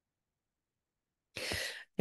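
Silence, then near the end a woman's short, audible intake of breath just before she speaks.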